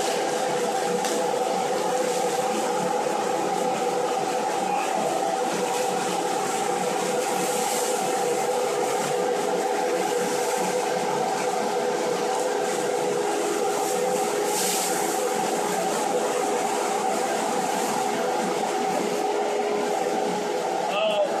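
Electric centrifugal blower running steadily, drawing loose expanded polystyrene beads through a flexible duct, with a steady hum of air and a held mid-pitched tone.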